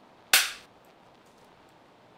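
One sudden, sharp noise about a third of a second in, loud and fading within a fraction of a second, followed by faint steady room hiss.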